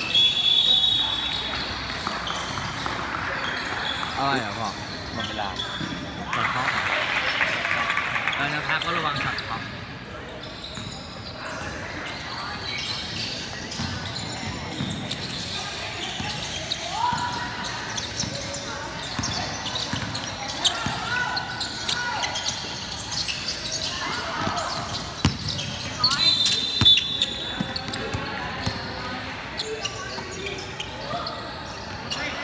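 Indoor basketball game sounds in a reverberant gym: players and spectators talking and calling out, with a basketball bouncing on the hardwood court.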